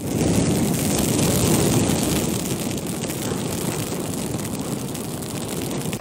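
Fiery roaring sound effect of an animated logo intro: a dense, noisy rumble that swells in suddenly at the start, slowly eases off, and cuts off at the end.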